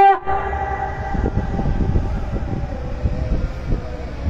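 A man's singing voice through the microphone breaks off just after the start, leaving wind rumbling and buffeting on the microphone, with a faint held tone lingering behind it.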